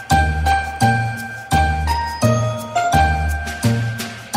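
Intro music: a chiming, bell-like melody over a steady bass beat, with about one beat every 0.7 seconds.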